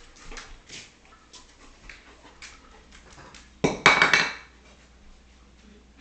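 Scattered clicks and taps of a German shepherd's claws and a wooden block on a tile floor, then a loud, harsh burst under a second long about three and a half seconds in.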